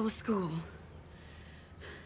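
A woman speaks one short line of film dialogue, then low room tone with a brief faint breathy noise near the end.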